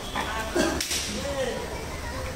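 A single sharp crack a little under a second in, like a stick or rope lashing the hide of a large bull, with men's voices around it.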